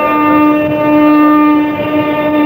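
Male Carnatic vocalist holding one long, steady note in raga Keeravani.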